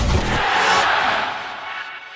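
Electronic intro music ends on a final hit about half a second in, then a crowd-like rushing roar carries on and gradually fades away.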